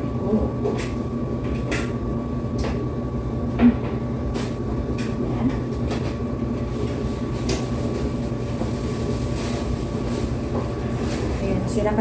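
Steady low machine hum of laundromat appliances, with scattered light clicks and knocks as dried clothes are pulled out of a stacked dryer's metal drum; one sharper knock about three and a half seconds in.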